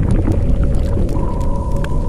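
Cinematic sound effect of an animated logo outro: a deep rumble under a steady hum, with scattered sharp crackles.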